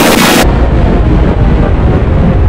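Loud, bright music cuts off abruptly about half a second in, giving way to a loud, heavily distorted low rumble with the treble stripped away.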